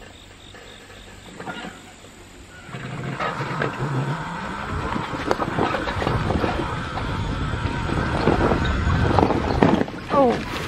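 A 1000-watt, 48-volt electric bicycle with no suspension and a bald tyre getting under way on a bumpy grass path about three seconds in. Its motor hum rises as it speeds up, and the rigid frame rattles and knocks over the bumps.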